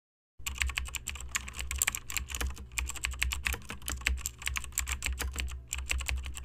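Rapid keyboard typing: a dense, uneven run of key clicks that starts about half a second in, over a steady low hum.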